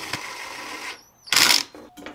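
Ryobi cordless power tool running steadily, then stopping about a second in as the bracket for the lens tube is fastened. A short, loud noise follows in the second half.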